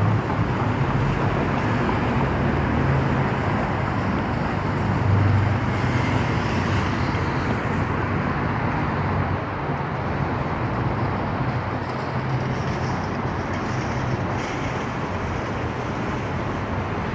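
Steady road traffic: cars and vans driving past, a continuous wash of engine and tyre noise with low engine hum, briefly a little louder about five seconds in.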